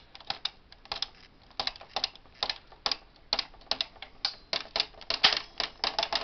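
Bond Incredible knitting machine's carriage pushed along the needle bed, knitting a row: a rapid, irregular run of sharp clicks and clacks as the latch needles pass through the carriage.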